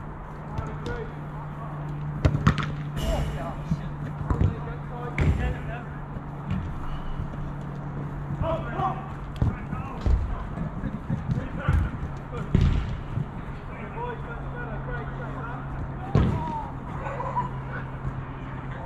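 Football match sound on an artificial-turf pitch: scattered distant shouts from the players, and now and then the sharp thud of the ball being kicked. A steady low hum runs underneath.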